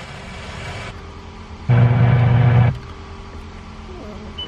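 Car stereo speakers with the volume turned up: a hiss for about the first second, then a loud, steady buzzing tone lasting about a second, as the head unit is switched from radio to satellite input.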